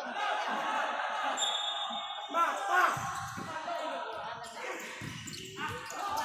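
Futsal match play on an indoor court: players' shoes squeaking on the floor and the ball being played, with a burst of squeaks a little before halfway through, over spectators' chatter in an echoing hall.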